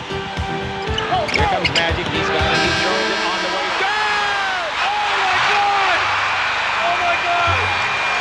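Music playing over basketball game audio, with a quick run of low thumps in the first two and a half seconds.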